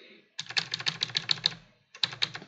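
Computer keyboard typing: a quick run of key clicks, about ten a second, starting about half a second in and stopping just before the end.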